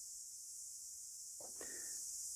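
Quiet background with a steady high-pitched hiss, and a faint brief sound about one and a half seconds in.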